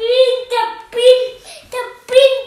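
A child singing a short run of high, held notes, about five sung syllables, each drawn out rather than spoken.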